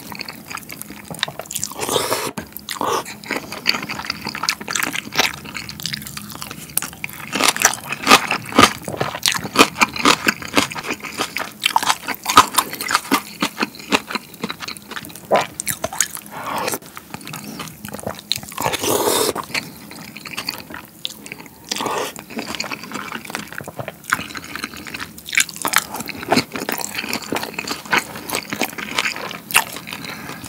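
Close-miked eating sounds: kongguksu (soy-milk noodles) slurped up from the bowl and chewed, with many wet mouth clicks and smacks. A few longer slurps stand out, the longest about nineteen seconds in.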